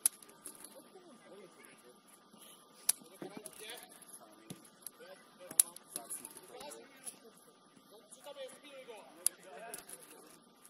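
Football kicked on an artificial-turf pitch: four sharp kicks a few seconds apart, the loudest about halfway through, with players' distant shouts between them.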